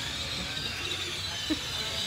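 Steady outdoor background noise: a low rumble under a constant high hiss. There is one brief faint voice-like sound about halfway through.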